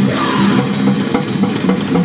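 Loud thrash metal: distorted electric guitar and bass over a fast drum kit with steady cymbal hits.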